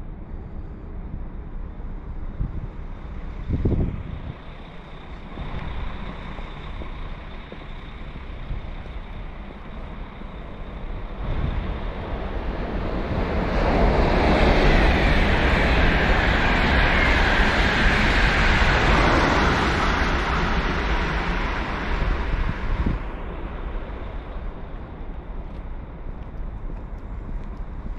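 A train passing, its rushing wheel and air noise building from about eleven seconds in, loudest for several seconds, then fading away. Low wind rumble on the microphone underneath throughout.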